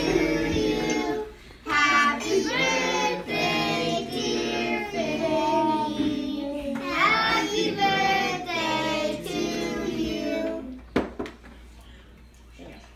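A voice singing a melody in long held notes over a steady musical accompaniment, fading out near the end with a couple of faint clicks.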